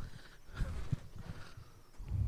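A lull with faint room hiss and a few soft, low thumps a little under a second in, typical of handheld microphones being handled and moved.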